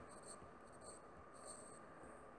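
Near silence with faint, brief scratches of a stylus writing a word on a tablet screen.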